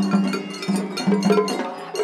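Festival hayashi music played on a dashi float, led by rapid, bright metallic strikes of the atarigane hand gong over lower steady tones.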